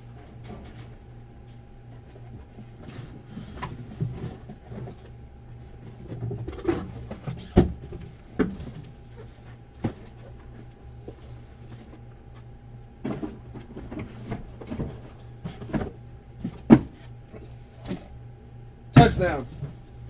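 Knocks, thumps and scuffs of heavy cardboard card boxes being handled and moved, over a steady electrical hum. The sharpest knocks come about three quarters of the way in and just before the end.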